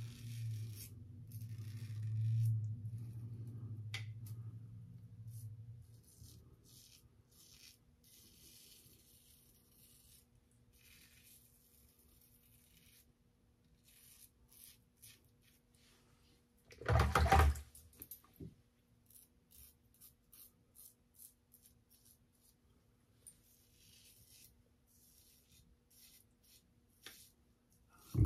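Safety razor scraping through lather and stubble in many short strokes. About two-thirds of the way through there is one louder, fuller sound.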